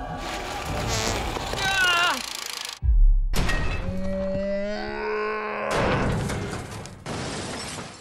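Dramatic soundtrack music and cartoon sound effects: a wavering falling sound early on, a sudden cut-out followed by a deep boom about three seconds in, then a long held wavering tone and a burst of noise near six seconds.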